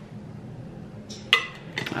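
A metal candle lid clinks once against a glass candle jar with a short ring, followed by a few faint ticks of handling.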